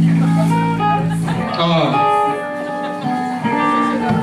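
Electric guitar ringing through an amplifier: a low note held for about a second and a half, then single higher notes picked one after another and left to ring.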